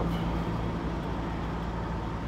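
Steady low hum of idling semi-truck diesel engines.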